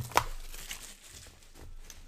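Plastic shrink wrap crinkling as it is pulled off a trading-card box, with a sharp snap about a fifth of a second in.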